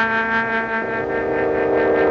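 Orchestral cartoon score holding a sustained chord with a pulsing tremolo of about five beats a second, the lower notes shifting a little under a second in.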